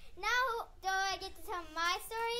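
A child's high voice in three drawn-out, sing-song phrases, each under a second, with short breaks between them.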